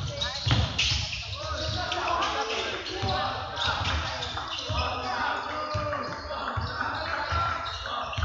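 A basketball being dribbled on a gym's wooden floor during play, a run of bounces, with players' and spectators' voices around it.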